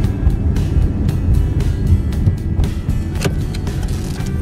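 Steady low rumble of a car's engine and tyres heard from inside the cabin while driving slowly, with music playing over it.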